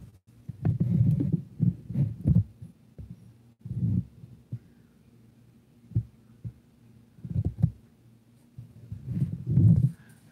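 Handling noise on a hand-held phone microphone as it is moved around: low rumbling thuds in several short bursts, with quiet stretches between.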